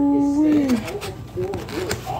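A person's voice holding a long hummed 'mmm' that falls in pitch and ends a little under a second in, followed by murmured voice sounds and two faint clicks.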